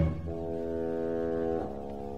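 Orchestra holding a soft sustained chord that shifts to another held chord about one and a half seconds in, from a 1956 radio broadcast recording.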